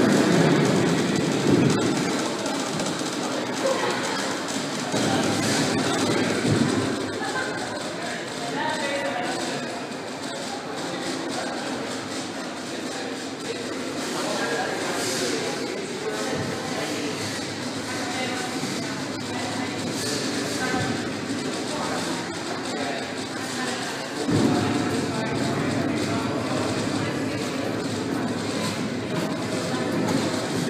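Indistinct voices murmuring in a large reverberant hall. A low rumble swells in at the start, again about five seconds in, and from near the end.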